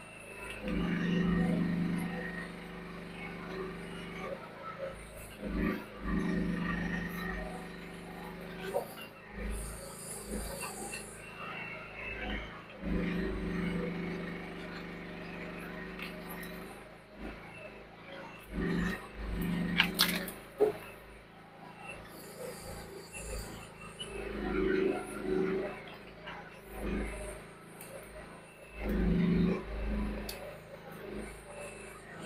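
Mini excavator's engine running, swelling louder in repeated spells of a second or a few as the arm and tracks work under hydraulic load. A single sharp crack about two-thirds of the way through, like wood snapping.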